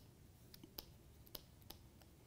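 Near silence with a few faint, irregular clicks: a stylus tapping on a pen tablet while handwriting on screen.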